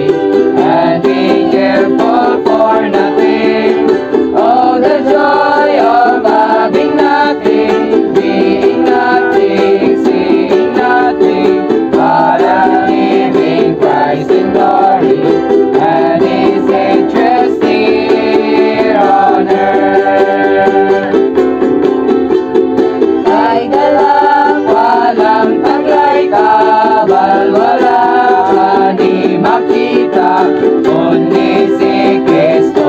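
Several strummed ukuleles playing chords, with a group of voices singing a hymn over them.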